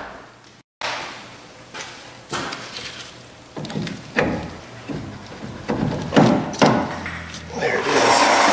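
Irregular metal knocks and clunks as the upper control arm and steering knuckle of a truck's front suspension are handled and lined up. They come more often and louder in the second half.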